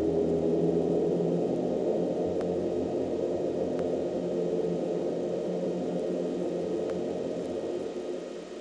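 Experimental ambient drone: a dense wash of many low held tones that slowly grows quieter, with a few faint clicks.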